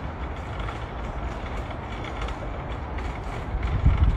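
Steady low rumble and hiss with faint scattered clicks, and a few stronger low thumps near the end.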